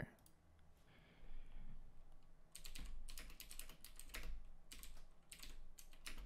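Typing on a computer keyboard: runs of quick keystrokes, starting about two and a half seconds in after a quiet start.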